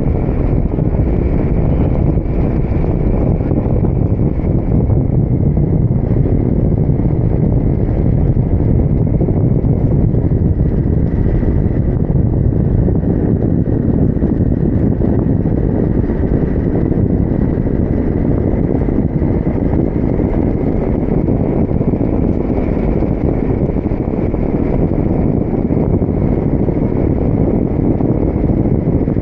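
Loud, steady wind rushing over the microphone of a camera in flight on a paraglider, with a faint, thin, high whistle running under it.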